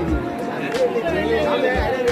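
Voices singing a wavering melody together over a crowd's chatter, with a few low thuds.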